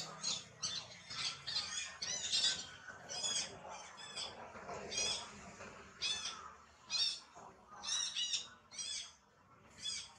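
Short, high-pitched chirping animal calls, repeated irregularly about twice a second.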